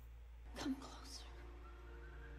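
Faint film soundtrack: a short, quiet vocal sound about half a second in, then a soft held tone of several steady notes, over a constant low hum.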